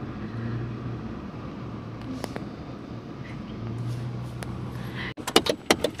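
Inside a car cabin: steady low engine hum and road noise as the car moves. Near the end comes a quick run of sharp clicks and knocks.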